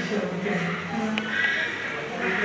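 Chimpanzees calling, with held high-pitched screams in the second half, over people's voices.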